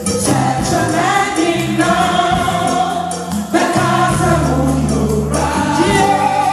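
Gospel choir singing a praise song, with the lead singer on microphone, over live band accompaniment with a steady bass line.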